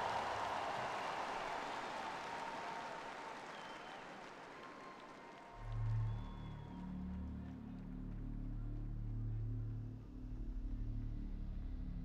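Stadium crowd applause fading away over the first five seconds. About five and a half seconds in, deep sustained music chords swell in and hold.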